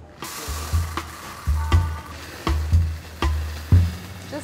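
Stainless steel ball bearings pouring from a cup onto foil in a pie crust, a steady hissing rattle of many small metal balls, used as pie weights for a blind bake. Background music with a steady drum beat plays over it.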